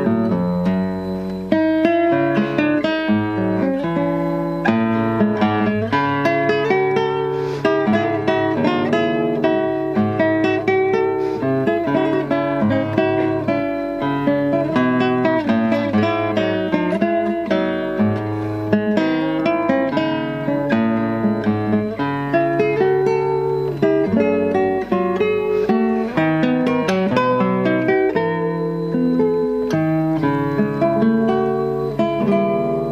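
Classical nylon-string guitar played solo fingerstyle: a continuous flow of plucked notes over a moving bass line.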